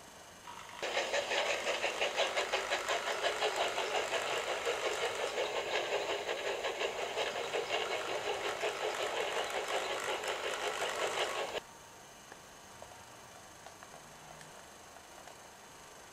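Model steam locomotive running along the track with a fast, even rhythmic beat, which cuts off suddenly about two-thirds of the way through.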